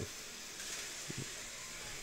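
Quiet room tone: a steady, faint hiss of background noise, with a brief faint sound just after a second in.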